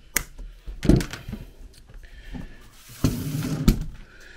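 Side cutters snipping the nylon 6.6 band of a hose clamp with a sharp click, then a thump about a second in. Near the end comes a stretch of rustling handling noise, closing on another click.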